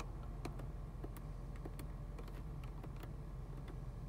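A 2008 Cadillac DTS's Northstar V8 idling with a low, steady hum, heard from inside the cabin, under light, irregular clicks of the dashboard info-display buttons being pressed, about a dozen in four seconds.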